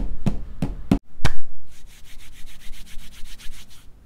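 Three evenly spaced knocks, then one loud hand clap just after a second in, followed by bare palms rubbing quickly back and forth against each other for about two seconds.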